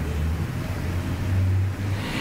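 A steady low rumble with faint hiss: background noise of the recording, with no speech.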